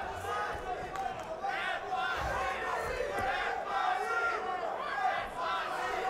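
Arena crowd shouting, many voices overlapping at a steady level.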